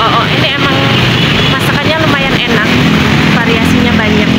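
Busy street traffic: motorcycle and car engines running as they pass close by, with people's voices mixed in.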